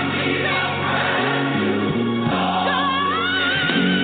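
Gospel music: a choir singing over sustained low accompaniment notes, with a high voice wavering in vibrato through the second half.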